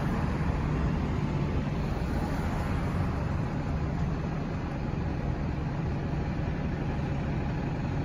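Steady outdoor traffic rumble, an even low-pitched hum with hiss above it.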